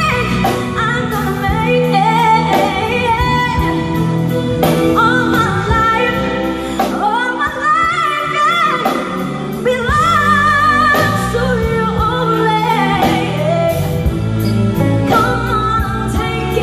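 A woman singing a soul ballad live through a microphone, backed by electric bass guitar and drum kit; her voice moves through sliding runs and held notes with vibrato.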